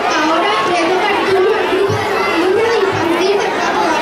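Crowd of young children chattering and calling out, with one voice held in a long wavering note.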